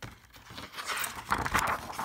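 Pages of a paperback picture book being turned and handled, a papery rustle that grows louder about a second in.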